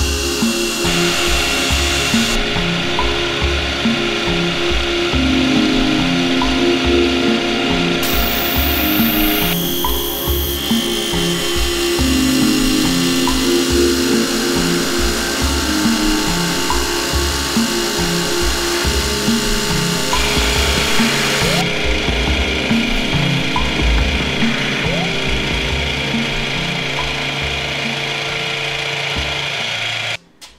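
HM-45 geared-head drill-milling machine running, an end mill cutting a slot in a metal part, with background music playing over it. The sound changes abruptly several times, as at edits.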